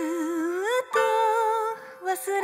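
Pop song: a woman singing, her voice gliding up in pitch, breaking off briefly, then holding a note with vibrato that fades near the end, over a steady sustained accompaniment.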